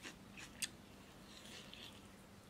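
A person chewing fried pork ribs close to the microphone: a few sharp crunchy clicks in the first second, then softer crunching a little later.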